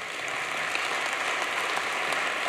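Audience applause in a church: a steady wash of many hands clapping, filling the pause after an emphatic line.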